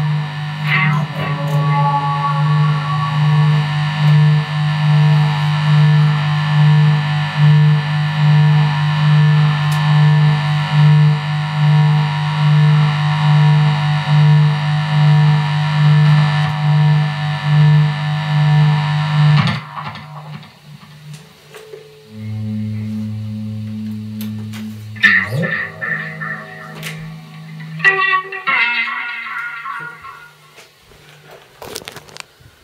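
Electric guitar played through a small practice amplifier with effects: a loud sustained low chord pulsing slowly, about once a second, that cuts off suddenly about 20 seconds in. Quieter held notes and two short bursts of strummed chords follow near the end.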